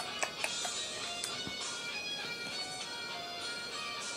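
Background music from an iPod playing steadily, with a few faint clicks.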